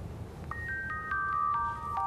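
A short chime jingle for a channel logo ident: bell-like notes, starting about half a second in, step down in pitch one after another and ring on, over a low rumbling bed.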